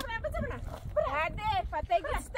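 High-pitched women's voices raised in short, bending cries.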